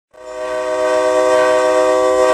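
MBTA commuter locomotive's multi-chime air horn (an MPI MP36PH-3C diesel) sounding one steady, held chord. It starts just after the beginning and is still sounding at the end.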